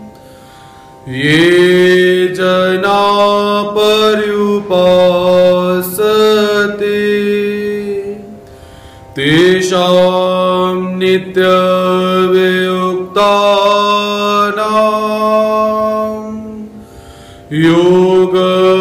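A man chanting a devotional invocation in long, held melodic phrases, with short breaths between them, over a steady low drone.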